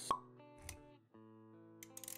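Intro music with sound effects: a sharp pop just after the start, a soft low thud about half a second later, then held musical notes.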